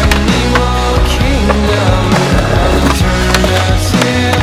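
Skateboard on a metal handrail, then a slam as the rider falls and the board clatters onto the ground, under a loud music soundtrack.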